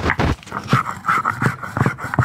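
A stone muller rubbed back and forth on a flat stone grinding slab (sil-batta), grinding the mixture finer: a rhythmic rasping scrape, about two to three strokes a second.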